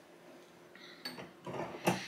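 A few light metallic clicks about a second in, the sharpest just before the end: a cast 9mm bullet being set on a case in the shell plate of a reloading press.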